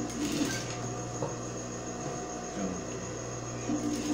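Industrial sewing machine running steadily, stitching a strip of tulle that is being gathered by hand into a ruffle.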